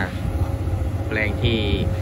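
XCMG XE215C hydraulic excavator's diesel engine running steadily, a low rumble, while the machine digs.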